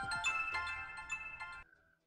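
Mobile phone ringtone playing a melody of bright chiming notes, stopping suddenly near the end as the call is answered.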